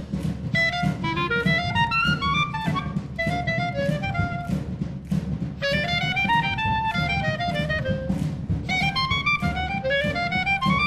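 Solo clarinet playing fast runs of notes that climb and fall, over a wind band accompaniment with a steady percussion beat.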